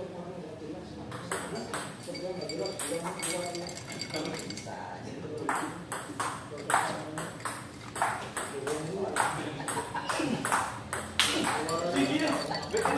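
Table tennis rally: a celluloid ball clicking sharply off the bats and the table in a quick back-and-forth run, starting about a second in.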